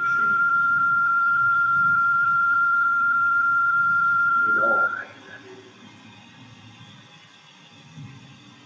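A single steady high-pitched electronic beep, loud and held at one pitch for about five seconds before cutting off sharply; a low hiss continues underneath and after it.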